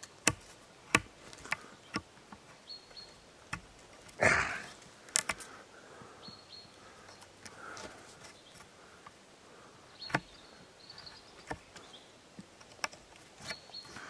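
Leatherman multi-tool blade whittling a wooden branch: a string of short, sharp cutting clicks with a longer shaving scrape about four seconds in and another around ten seconds.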